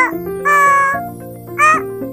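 A high-pitched voice chanting the phonics sound 'O, oh' in drawn-out notes over a children's music backing track.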